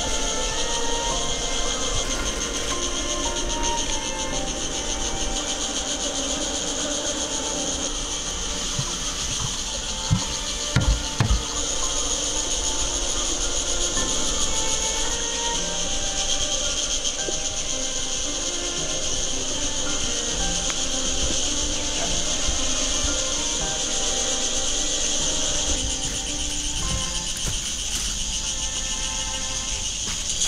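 A steady, high-pitched drone of insects over soft instrumental music, with a few sharp knocks about ten seconds in.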